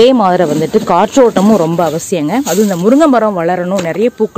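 A person speaking continuously in Tamil, narrating without a pause.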